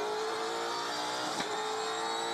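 V8 Supercars racing engine running at high revs, its pitch rising slowly as the car accelerates, with a brief click a little after the middle.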